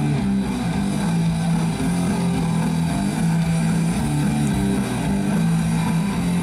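Live punk rock band playing loud, with electric guitars and bass in a riff of held low notes that change about every second.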